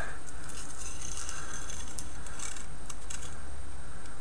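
Faint scattered clicks and scratches of a glued length of scale-model tank track links being handled and worked off sticky tape, over a steady low hum.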